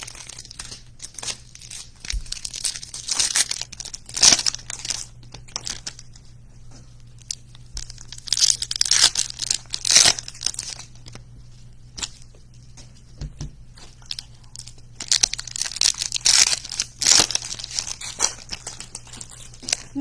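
Foil trading-card pack wrappers being torn open and crinkled by hand, in three spells of tearing and rustling.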